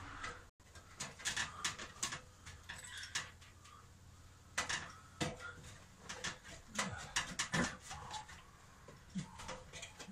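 Scattered metallic clinks and knocks, a dozen or so at uneven intervals, from someone moving on an aluminium ladder and handling tools and fittings.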